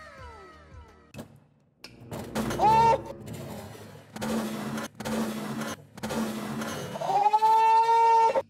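High, drawn-out wordless cries of alarm from people reacting to a glass of wine knocked over on a steel table: a short cry about two and a half seconds in and a long held one near the end, with music under them. A few falling tones sound in the first second.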